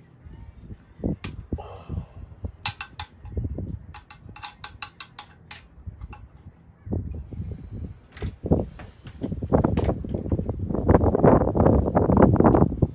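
Quick, sharp clicks and taps of hard plastic or metal parts from hands working a wall light fitting, a tight run of them in the first half. Then denser knocking and rustling handling noise builds up, loudest near the end.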